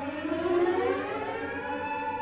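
Bowed strings of a viola, cello and double bass trio sliding slowly upward together in a siren-like glissando, levelling off into a held high note about three quarters of the way through.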